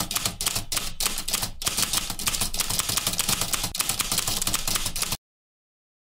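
Typewriter sound effect: a fast, dense run of keystroke clicks that cuts off suddenly about five seconds in.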